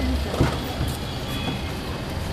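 SUV engine running at low revs as the car stands at the kerb, a steady low rumble, with a short knock about half a second in.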